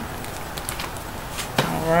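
Light handling noise from glossy paper magazines being turned over and set down, with a few faint taps and a sharper click about a second and a half in. A woman's voice starts just after the click.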